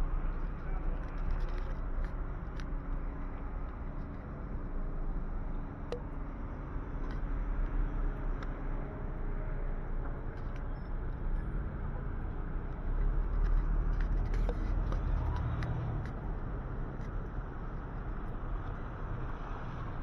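Street traffic ambience: a steady low rumble of car engines and tyres, swelling louder for a few seconds past the middle as a vehicle goes by.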